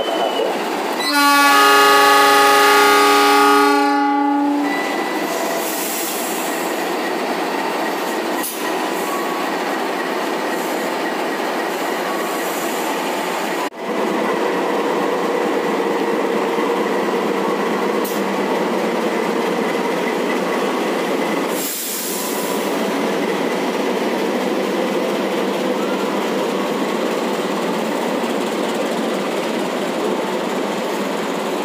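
Horn of a CC 206 diesel-electric locomotive sounding one long blast of about three seconds, a second into the clip. Then the passenger train's carriages rolling past with a steady running noise as it pulls out of the station.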